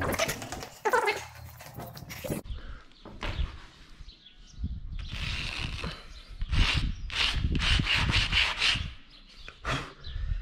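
A reddish rock scraped across rough concrete to draw a line: a longer scrape about five seconds in, then a run of quick rasping strokes, a few a second, until near the end. A few sharp knocks come in the first two seconds.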